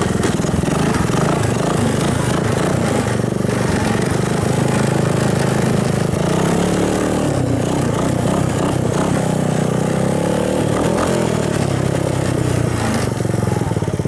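1984 Honda ATC 200S three-wheeler's single-cylinder four-stroke engine running through a homemade exhaust while being ridden, its revs rising and falling a few times with the throttle.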